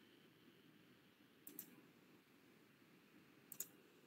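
Near silence broken twice by faint clicks at a computer: a few about one and a half seconds in and another pair near the end.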